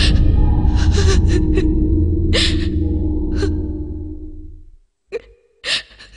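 A dramatic low booming music sting from the soundtrack holds and fades away over about four seconds, with several short, sharp gasps over it. Near the end it drops briefly to silence before a voice comes in.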